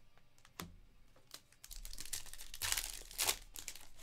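Foil wrapper of a Panini Select basketball card pack being torn open and crinkled. A single tap comes first; the crackling starts about two seconds in and is loudest near the end.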